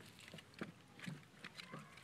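Labrador puppies' paws padding and splashing in a shallow plastic kiddie pool: faint, irregular taps, several in two seconds.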